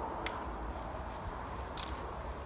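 Outdoor background noise: a low steady rumble with a faint hum, a small click shortly after the start and a brief hiss near the end.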